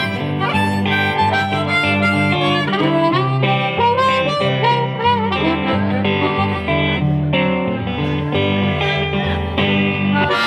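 Blues harmonica solo played with the harmonica cupped against a vocal microphone, its notes bending and wavering, over an electric guitar playing a steady walking bass-note accompaniment.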